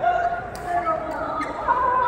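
Voices talking in a large, echoing indoor badminton hall, with two sharp taps, about half a second and a second and a half in.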